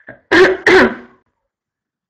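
A woman clearing her throat twice, two short, loud rasps in quick succession in the first second.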